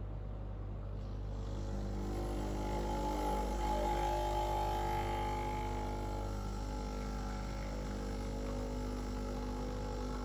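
Breville Oracle Touch espresso machine pulling an espresso shot, its pump giving a steady hum. About two seconds in, the hum gets a little louder and higher tones join it, and it then holds steady.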